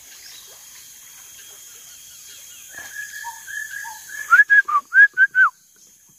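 Clear whistling: a run of single-pitched, high notes that grow louder in the second half, the later ones ending in quick downward slides, with a few lower short notes between.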